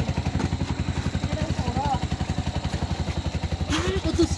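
Auto-rickshaw's single-cylinder engine running steadily with a rapid, even chug.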